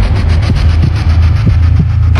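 Loud, deep steady rumble with a fast, even flutter above it, engine-like in character, part of a produced intro soundtrack.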